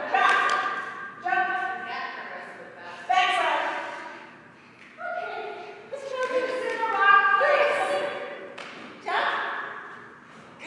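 Indistinct talking in a large hall, in several phrases with short pauses.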